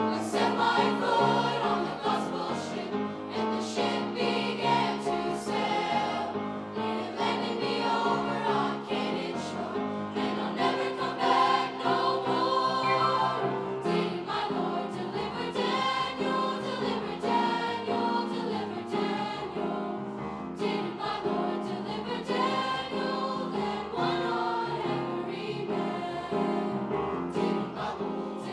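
A middle-school choir of girls' and boys' voices singing together, continuously.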